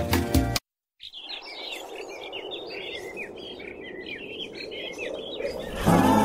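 Music cuts off abruptly about half a second in. After a short silence, small birds chirp rapidly and repeatedly over a soft, steady background hiss. Loud music with singing comes back in just before the end.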